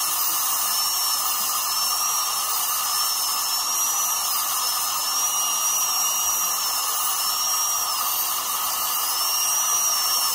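A dental drill handpiece whining steadily at a high pitch that wavers slightly up and down, over a steady hiss.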